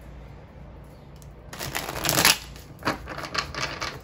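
A deck of tarot cards being shuffled. The first second and a half is quiet, then comes a dense burst of riffling about two seconds in, the loudest part, followed by a run of short sharp card snaps.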